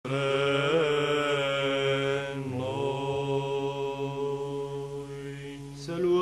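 Byzantine chant sung by the cathedral's cantors (psalți): an ornamented melodic line over a steady sustained drone (ison). The melody falls to a long held note about halfway through and the phrase ends just before the close.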